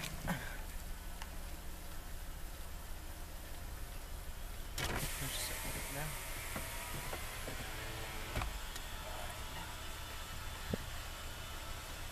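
A 2002 Dodge Caravan's power window motor runs as the driver's door glass moves, with a sharp click about five seconds in and another near eight seconds, over the low steady hum of the idling engine.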